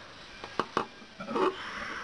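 A few light clicks and taps, about half a second to a second in, from a homemade knife with a file-steel blade being handled, followed by a faint low murmur.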